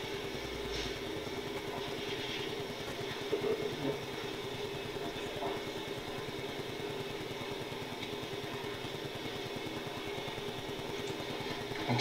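Steady low background hum and noise, with a couple of faint soft bumps about three and a half seconds in.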